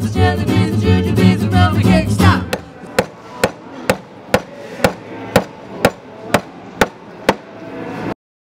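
A song with singing runs for the first two seconds or so and then ends. After that comes a hammer striking a wooden board in a steady rhythm, about two even blows a second, around a dozen in all.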